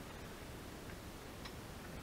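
Faint, quiet handling of a paper cutout on a craft mat, with a couple of light ticks about halfway through and again a little later.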